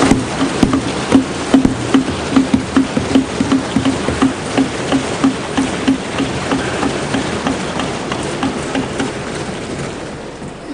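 Many members of parliament thumping their wooden desks in applause: a dense, uneven drumming of hands, with a beat of a few strokes a second standing out, slowly dying down toward the end.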